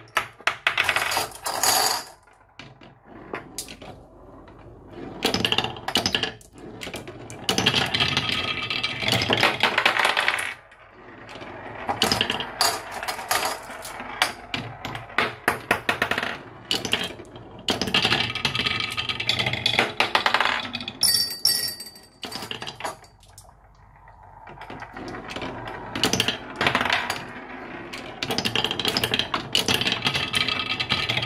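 Glass marbles rolling and clattering through a wooden marble run, clicking against the wooden track and blocks in busy spells with quieter gaps between.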